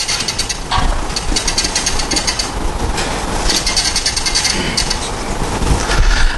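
Marker pen writing on a whiteboard, heard close up through a clip-on microphone. It squeaks and scratches in three runs of quick strokes.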